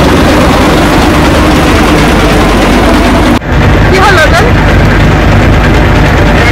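A boat's engine running steadily, heard from on board. It breaks off sharply for a moment about three and a half seconds in, then carries on.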